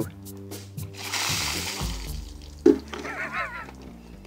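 Ice water tipped from a bucket splashing onto a seated person and the paving, a rush of splashing from about a second in lasting about a second and a half. Background music plays under it, with a brief voice near the end.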